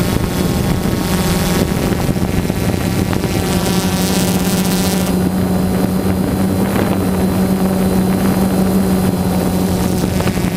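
Multirotor drone's electric motors and propellers humming steadily, heard from the camera riding on the drone, with wind rushing over the microphone. The pitch of the hum shifts about five seconds in.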